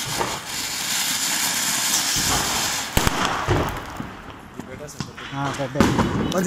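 A ground firework fountain spraying sparks with a loud, steady hiss for about three seconds. A single sharp crack follows, then a few smaller pops as the hiss dies away.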